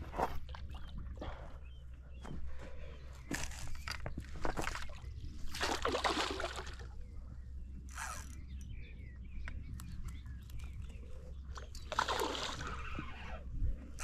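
Hooked pike splashing and thrashing in shallow water as it is drawn into a landing net, in a series of short splashes, the loudest about six seconds in and again near the end, over a steady low rumble.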